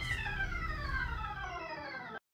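Background music: a held Hammond organ chord whose pitch slides steadily downward.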